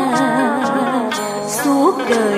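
A woman singing solo into a microphone, holding notes with a wide vibrato, with a quick upward slide near the end.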